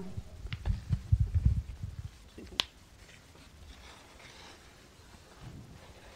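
Handling noise of a fold-out pop-up book being picked up and pulled open: soft low knocks and rustles, then one sharp click about two and a half seconds in, followed by only faint ticks.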